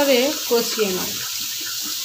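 Ground spice paste frying in hot oil in a pan, a steady sizzle as it is stirred with a spatula.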